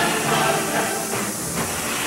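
A rushing hiss of noise with faint music beneath it.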